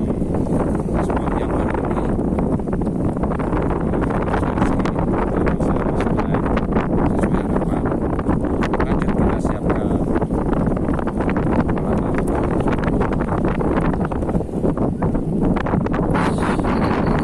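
Strong wind buffeting the microphone: a steady, loud low rumble with scattered crackles, which drowns out the voice.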